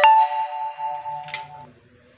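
A bell struck once: a sharp strike, then several clear ringing tones that fade out after about a second and a half, with a small clink near the end.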